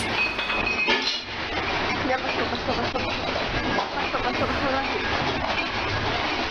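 Continuous rumble of a house shaking in a strong earthquake, with dense rattling and clinking of furniture, dishes and fittings.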